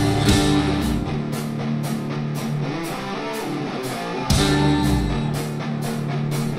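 Live folk metal band playing: plucked strings over drums with a steady high tick in a lighter passage. The full band comes back in with a heavy hit about four seconds in.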